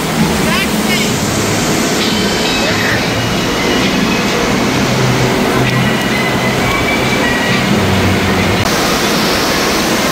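Steady wash of running and splashing water from the pools and fountains of an indoor water park, echoing in the big hall, with distant voices and children's shouts mixed in.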